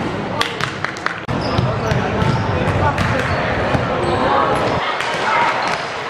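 Basketball game in a sports hall: a ball bouncing on the hardwood floor, with several sharp knocks in the first second, over indistinct voices echoing in the hall.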